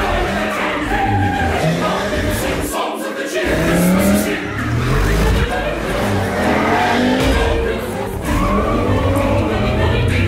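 Sports-car engines revving and tires squealing as cars are thrown through tight turns, mixed under a choir singing a Christmas song.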